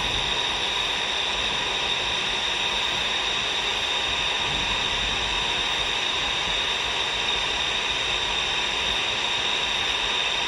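Steady hiss of static from a C. Crane Skywave SSB 2 portable radio's speaker, tuned to the 124.100 MHz air band with no station transmitting.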